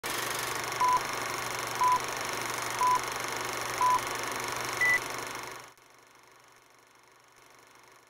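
Film-leader countdown beeps: four short beeps evenly a second apart, then a fifth higher-pitched beep, over a steady hiss with a low hum. The hiss drops away after about six seconds, leaving a faint hiss.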